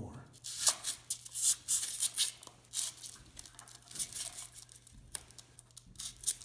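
Scratchy rustling and scraping of Romex cable being pressed by hand into a channel cut in the foam of an ICF wall, busiest in the first three seconds and sparser after. A faint steady low hum runs beneath.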